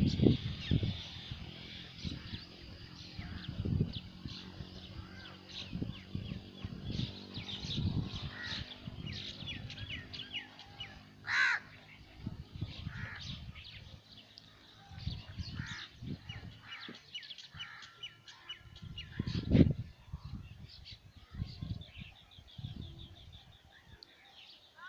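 Birds chirping and calling all through, with one louder call about eleven seconds in. A few low thumps come and go underneath, the loudest about twenty seconds in.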